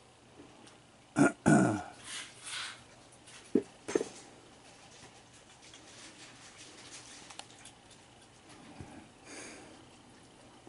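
A short, low grunt-like vocal sound that falls in pitch about a second in, followed by a couple of rustling bursts and two sharp knocks a little later.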